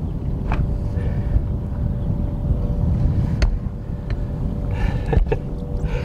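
Low wind rumble on the microphone over a steady motor hum, with a few short knocks.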